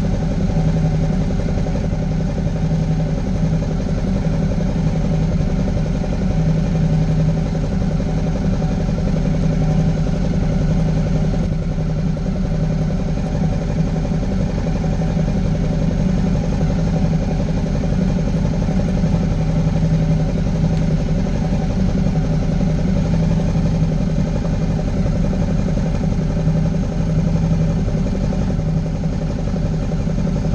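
Motorcycle engine idling steadily at close range, with an even, unchanging note.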